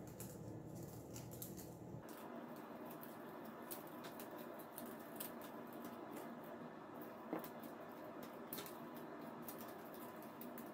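Faint handling of rolled magazine-paper strips as they are creased and woven into a basket: light rustling with scattered small clicks, and one sharper click a little past the middle.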